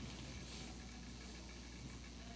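Quiet room tone in a pause, with a steady low electrical hum and one brief soft hiss about half a second in.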